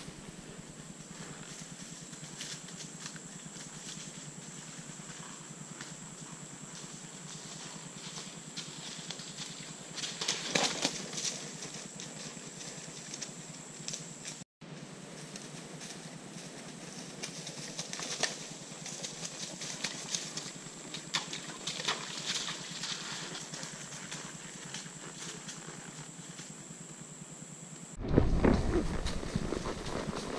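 A mule's hooves crackling and crunching through dry leaf litter on the woodland floor as she walks in, over a steady faint high hum. Near the end, closer and louder footfalls and rustling as she carries her rider.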